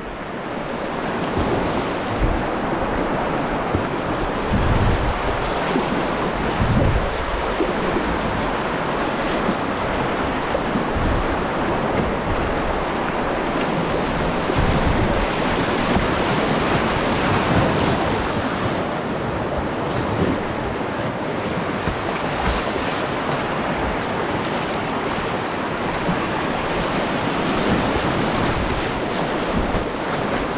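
Rushing whitewater of a small river's rapids, heard from a kayak paddling down through them, a steady roar of churning water. Occasional low thumps of buffeting hit the microphone.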